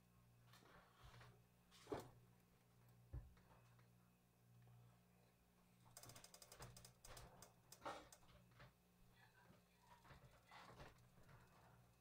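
Near silence: faint room tone with a low steady hum, a couple of soft knocks and a few faint clicks.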